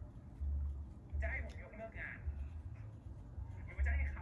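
Speech from the drama episode playing, heard faintly through the room, with a low rumble coming and going underneath.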